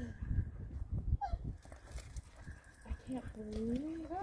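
Wind buffeting the microphone in low, uneven gusts. About a second in there is a brief gliding squeak, and near the end a short, rising vocal sound leads into laughter.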